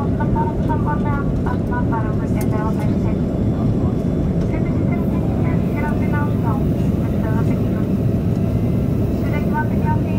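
Steady cabin noise of a jet airliner in flight: a dense, even rumble of engines and airflow. Indistinct voices talk over it at times.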